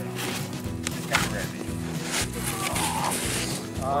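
Background music with steady low held notes, a single sharp knock about a second in, and a faint voice near the end.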